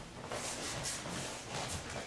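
Faint shuffling of bare feet on training mats, with soft rustles between steps.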